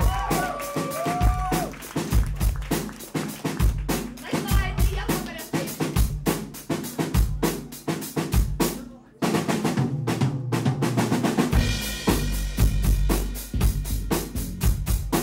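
Live band playing loud, fast rock: a drum kit struck hard and quickly with electric bass underneath. The music drops out briefly about nine seconds in, then comes back in full.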